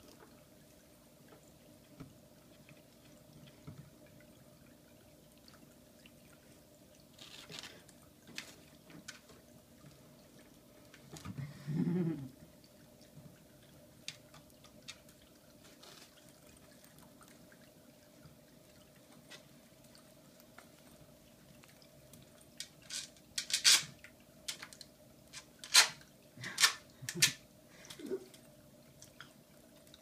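Scattered sharp clicks and knocks of a Shiba Inu puppy's claws and playthings on a tile floor, sparse at first and then a run of loud ones in the last third. There is one brief low sound a little before the middle.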